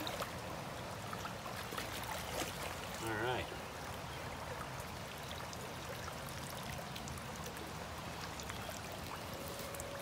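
Steady rush of a creek's flowing water, with light splashing as a wader works a long-handled dip net through it and lifts it out.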